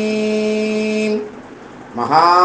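A single held note with even overtones, dead steady in pitch, which stops abruptly a little over a second in; a faint low background follows.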